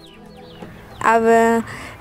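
A few faint, short high chirps from birds in quick succession, in the first half second or so, over a quiet outdoor background.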